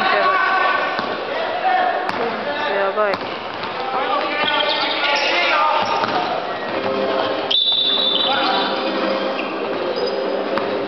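Basketball bouncing on a hardwood gym floor while players call out during a game. About seven and a half seconds in, a high whistle sounds for about a second, a referee's whistle stopping play.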